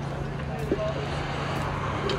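A steady low engine drone, with faint voices in the background and a few small clicks.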